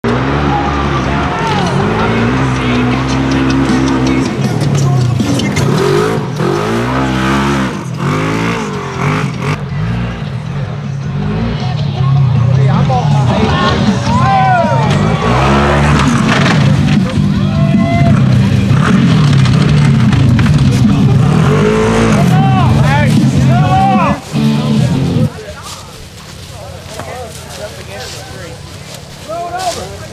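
Polaris RZR XP 1000 side-by-side's engine revving hard, its pitch rising and falling as the machine is driven and rolls over. About 25 seconds in the engine noise cuts off and the sound drops much quieter.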